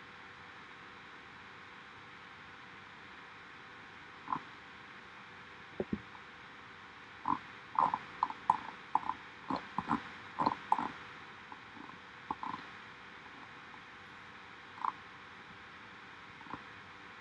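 Scattered light clicks from working a laptop's controls, a few early on and then a dense run of about a dozen between about seven and eleven seconds in, over a faint steady hiss.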